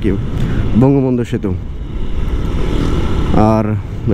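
Riding noise of a moving motorcycle: a continuous low rush of wind and engine, with the rider's voice speaking a word about a second in and again near the end.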